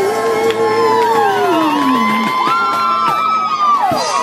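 A brass band's last long note, held and then sliding down in pitch over about two seconds, followed by a crowd cheering and whooping.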